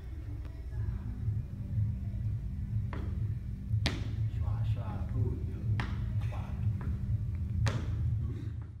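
Cowboy-boot heels knocking down on a rubber gym mat during calf raises: four sharp knocks a second or two apart, over a steady low room hum.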